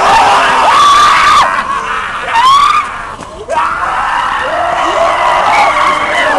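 Several people screaming and yelling in long drawn-out cries, one over another. There is a short lull about three seconds in.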